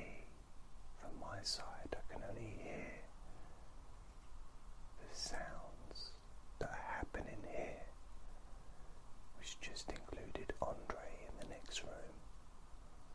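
A man whispering close to the microphone in three stretches of soft, breathy phrases that the words cannot be made out of.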